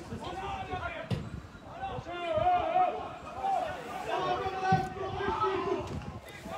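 Men's voices shouting and calling across an outdoor football pitch, with long drawn-out calls. Two short knocks cut through, about a second in and near the five-second mark.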